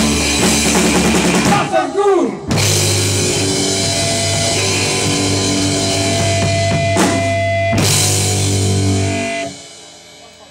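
Rock band of drum kit, electric guitar and bass guitar playing. About two seconds in the band breaks on a sliding note, then a long held chord with drum hits rings out before cutting off near the end, the close of the song.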